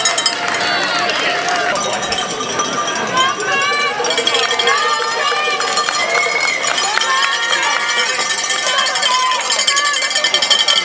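Roadside crowd of spectators shouting and cheering encouragement to a passing racing cyclist, many voices overlapping.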